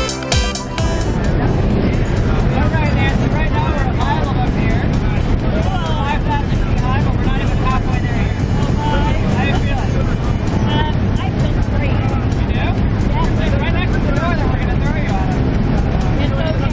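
Music stops about a second in, giving way to the steady engine and propeller noise inside the cabin of a small jump plane in flight, with voices raised over it.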